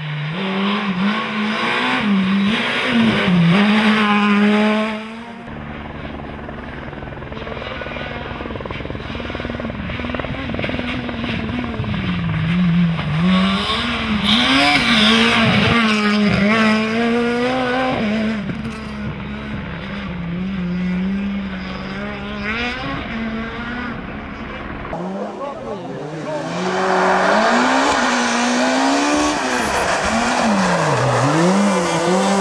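Super 2000 rally cars, naturally aspirated two-litre four-cylinders, passing one after another at full stage pace. Each engine note climbs high and drops back again and again as the car brakes, shifts and accelerates through the corners.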